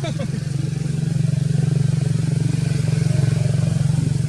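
A motor engine running steadily close by: a loud low hum with a fast, even pulse, growing slightly louder about a second in.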